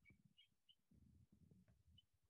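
Near silence: room tone with a few very faint short squeaks.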